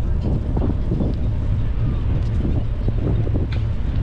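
Wind buffeting the microphone of a camera riding on a moving bicycle: a steady, loud low rumble with a few faint ticks over it.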